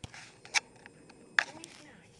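Two short sharp clicks, about a second apart, over faint rustling.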